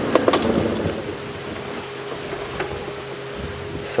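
Safari vehicle engine running steadily at idle, with a few clicks and rattles in the first second.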